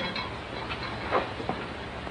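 A barred steel cell door being worked open, giving two faint knocks a little after a second in, over the steady hiss of an early-1930s film soundtrack.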